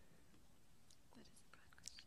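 Near silence: room tone, with a couple of faint soft sounds in the second half.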